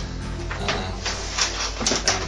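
Nylon bag fabric and rubber swim fins rustling and scraping as the fins are pushed into the bag's main compartment, in a few short bursts of handling noise over a steady low hum.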